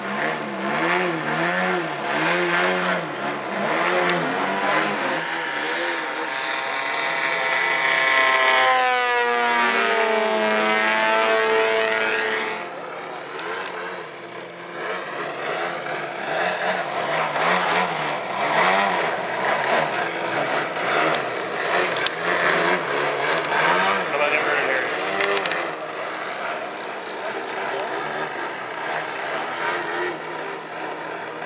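Two giant-scale RC aerobatic planes' 120cc Desert Aircraft twin-cylinder two-stroke gasoline engines, throttling up and down through aerobatic manoeuvres so the pitch keeps wavering. Around nine seconds in, one plane passes with a falling pitch, and about twelve seconds in the sound suddenly drops in level.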